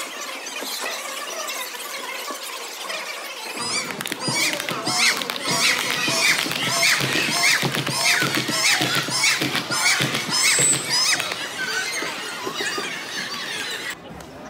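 Athletic shoes squeaking on a hardwood gym floor as volleyball players shuffle and move. There are many short, high squeaks in quick succession, starting about four seconds in and thinning out near the end.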